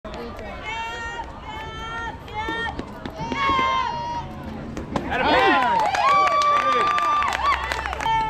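Young voices shouting a rhythmic four-beat chant. About five seconds in a bat hits the ball with a sharp crack. A burst of overlapping high-pitched yelling and cheering follows, with one long held yell.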